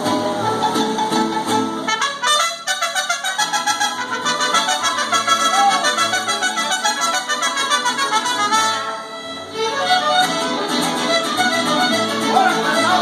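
A live mariachi band playing: violins and trumpets carry the melody over the strummed guitar and the bass of a guitarrón. The music eases briefly about nine seconds in, then picks up again.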